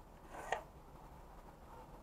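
A short, faint scrape on paper ending in a light click, from the pencil and straightedge strip used to draw lines on a paper template.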